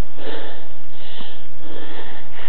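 A person breathing close to the microphone, two audible breaths over a steady hiss.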